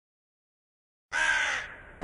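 One caw from a crow-type bird about a second in, trailing off over the next half second.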